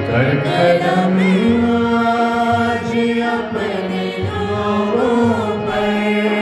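Harmonium holding sustained chords under a man singing a worship song in a wavering, ornamented melody.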